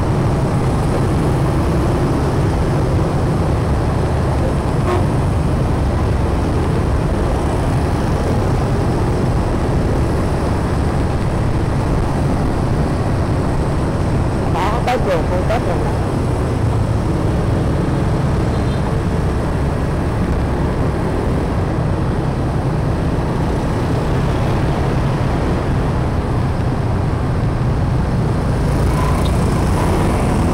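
Steady traffic noise from a moving motorbike in dense scooter traffic: engine and road rumble, heavy with wind on the microphone. About halfway through there are a few short clicks and a brief pitched sound.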